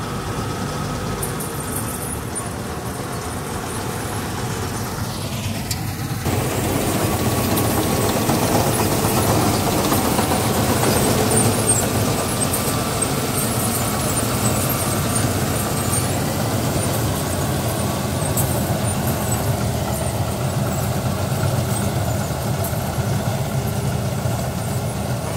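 Combine harvester running as it cuts standing crop: a steady drone of its engine and threshing machinery. About six seconds in, the sound steps up louder and holds there, heard from close by.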